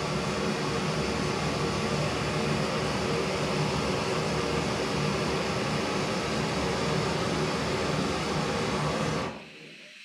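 Small screw-on gas canister stove burner running with an open blue flame, a steady hiss. It cuts off suddenly near the end as its valve is turned off.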